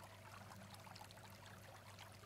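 Near silence: a faint steady hiss with a low hum, in a pause between spoken words.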